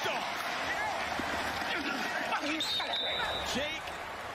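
Field-level sound of a college football play ending: scattered shouts from players on the field and a referee's whistle blown for about a second near the end.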